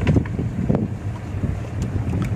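Wind buffeting a phone's microphone outdoors: an uneven low rumble that rises and falls in gusts.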